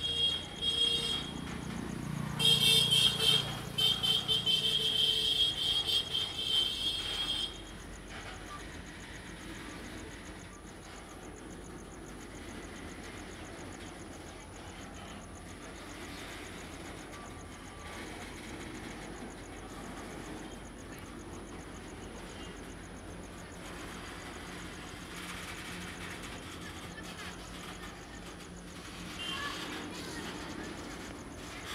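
Loaded BTPN tank wagons of a freight train rolling past on jointed track, a steady rumble and clatter. A loud shrill tone sounds briefly at the start and again for about five seconds soon after, wavering at first and then held.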